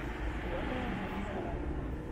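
City street ambience: nearby voices chatting, with no words picked out, over a steady hum of traffic and street noise.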